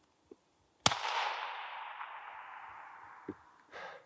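.222 rifle shot: a single sharp crack about a second in, with its echo rolling away and fading over more than two seconds. The rifle's scope had been knocked off zero, shooting 10 cm high and 10 cm right at 100 m, so the shot missed.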